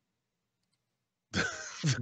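About a second of silence, then a man's rough, throaty vocal sound, like a throat clearing, running straight into the spoken word "the".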